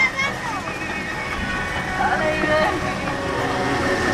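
People talking aboard a small open fairground road train, over its low running rumble and music from its loudspeakers.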